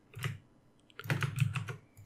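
Computer keyboard keys being tapped: one short tap near the start, then a quick run of clicks about a second in.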